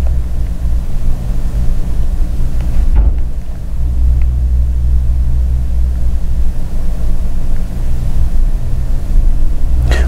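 Steady, loud low-pitched hum of evenly spaced tones, with no other clear sound except a faint click about three seconds in.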